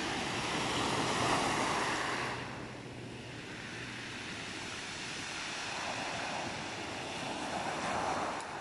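Sea waves breaking and washing up a pebble beach. The surf is loudest in the first two seconds, eases off, then swells again near the end.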